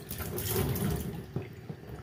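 Water running from a faucet, splashing over a cloth applicator pad held under the stream and into a utility sink; the splashing grows quieter after about a second.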